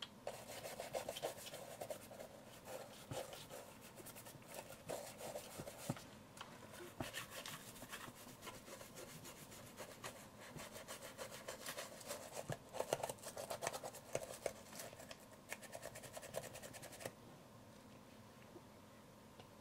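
Toothbrush bristles scrubbing the body of an old film SLR camera in quick, scratchy back-and-forth strokes. The brushing stops suddenly about a second before the end.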